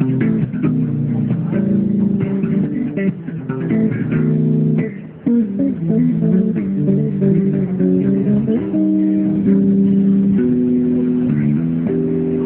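Solo electric bass guitar played through a small amplifier: chords and melodic lines of sustained notes, several often ringing together. It breaks off briefly a little past the middle, and a rising slide comes in near nine seconds.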